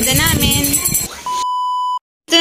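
A woman talking, then a steady, high, pure beep of about three-quarters of a second that cuts off suddenly: a test-tone sound effect laid over a glitchy TV test-pattern transition.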